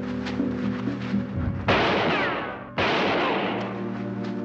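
Two gunshots about a second apart, each sudden and followed by a long echoing tail, over a dramatic music score.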